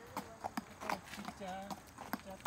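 A horse walking on an asphalt road, its hooves clopping on the pavement in an uneven walking rhythm, a few strikes a second.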